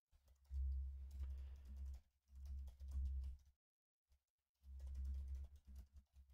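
Typing on a computer keyboard in three short runs of keystrokes with brief pauses between, the clicks carrying a deep thud beneath them.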